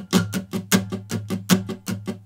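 Martin D-28 dreadnought acoustic guitar strummed in a busy, even sixteenth-note pattern on a D major seven chord, with some strums accented louder than the rest to put a rhythm on top of the underlying sixteenths.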